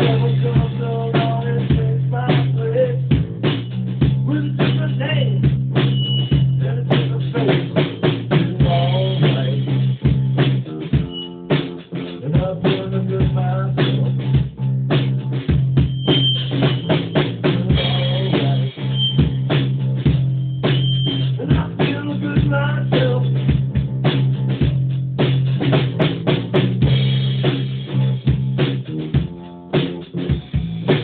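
Instrumental rock jam: a drum kit played hard and busily with bass guitar and guitar, heard raw in a small practice room. The band drops out briefly just before halfway, then carries on.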